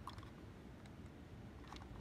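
Near silence: low room hum with a few faint clicks from the plastic model locomotive being handled.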